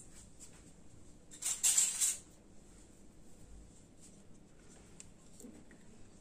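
Mostly quiet room tone, with one brief hissing rustle about a second and a half in, lasting under a second, and a few faint clicks later.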